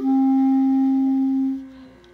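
Clarinet moving down to a lower note and holding it steadily for about a second and a half before it stops.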